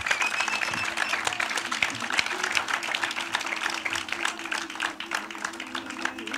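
Theatre audience applauding, with dense clapping throughout. A low, sustained string note, like a cello, comes in under the applause about two seconds in as closing music begins.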